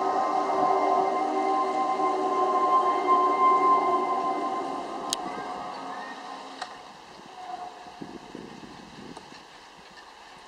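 Eerie sustained drone of layered tones from the spooky projection soundtrack, fading away over the second half to a faint hiss with a couple of sharp clicks.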